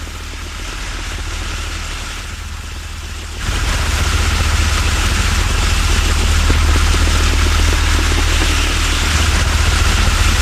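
A steady engine rumble with a hiss over it, stepping up louder about three and a half seconds in.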